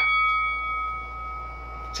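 A bell ringing out and fading over about a second and a half, a round-start bell sound effect marking the beginning of round one.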